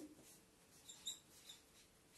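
Faint short squeaks of a marker pen writing on a whiteboard, a few of them around the middle, against near silence.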